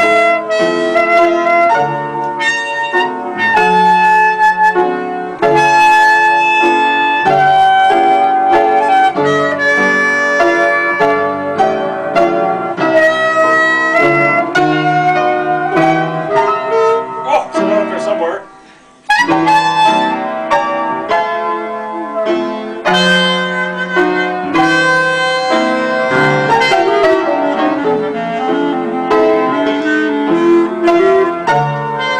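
Piano and clarinet playing a tune together, the clarinet holding melody notes over piano chords. The music drops out briefly about two-thirds of the way through, then carries on.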